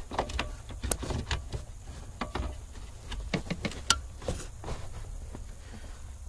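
Plastic wiring-harness connector being handled and pushed into a Ford F-150's gateway module under the dash: a scatter of small clicks and knocks as the plug and wires are worked into place, over a faint low hum.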